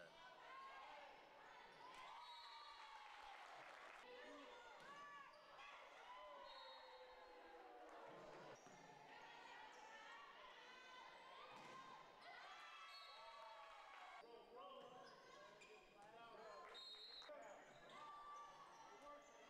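Faint live game sound from an indoor volleyball match: short gliding squeaks of sneakers on the hardwood court and ball hits, with players' and spectators' voices in the gym.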